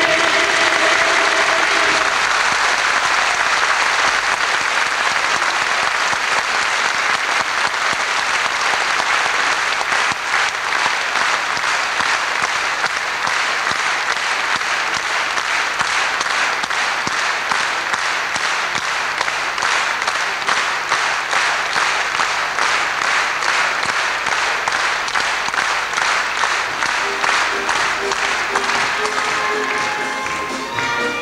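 Concert audience applauding as the choir's final chord fades in the first two seconds. About ten seconds in, the applause falls into rhythmic clapping in unison, which carries on to the end.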